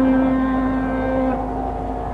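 Carnatic music in raga Mukhari: a long held melodic note over a steady drone, the note weakening about a second and a half in.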